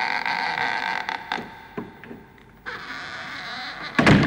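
Scratchy vintage film-logo soundtrack: a held tone of several pitches, scattered with clicks and pops. It fades about midway and comes back near the end.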